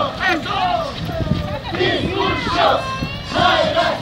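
A group of Tinku dancers shouting and yelling together as they dance, several voices overlapping in rising and falling cries.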